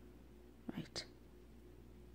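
Quiet room with a steady low electrical hum, and one brief soft murmured or whispered syllable just under a second in.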